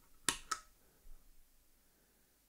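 Two sharp mechanical clicks about a quarter second apart from the stomp footswitch of an Airis Effects Merciless Distortion guitar pedal, pressed by hand, followed by a faint tick.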